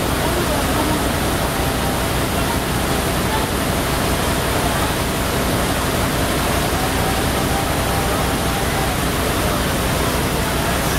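Steady, loud rushing noise from a large burning house fire being fought with fire hoses.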